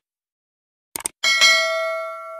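Subscribe-animation sound effect: a quick double click about a second in, then a bright notification-bell ding that rings on and slowly fades.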